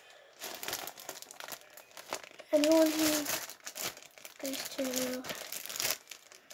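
Rustling and crinkling handling noise close to the microphone, with two short voiced sounds, the louder one about two and a half seconds in and another near the end.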